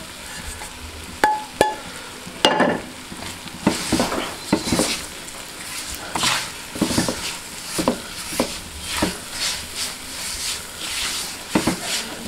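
Silicone spatula stirring and scraping crumbly milk solids with sugar and semolina around a wok over heat, in irregular strokes about once a second, with a sizzle from the hot ghee underneath. A couple of sharp clicks near the start.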